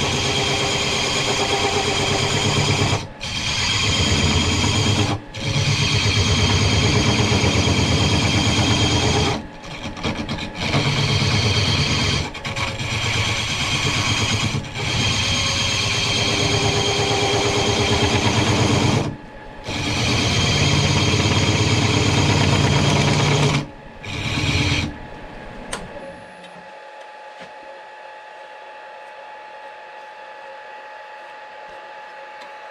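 Handheld tool bit cutting a spinning cast-iron tool-rest post on a woodturning lathe, with cutting oil applied: a loud, harsh scraping in runs of a few seconds, broken by short pauses as the bit is lifted. The cutting stops about 26 seconds in, leaving only a faint steady hum.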